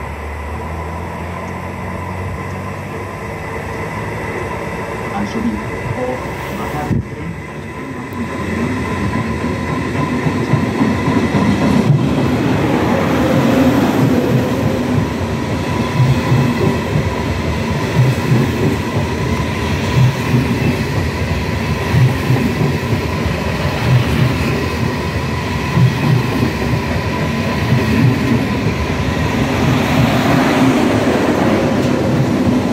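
Renfe AVE Class 100 high-speed electric train approaching and passing along a station platform: a rumble that grows for about ten seconds, then loud wheel-on-rail noise with a regular thump about every two seconds as the wheelsets go by, until the rear power car passes near the end.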